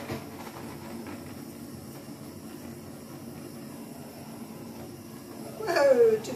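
Handheld torch flame running with a steady hiss as it is passed over wet acrylic pour paint to bring up cells.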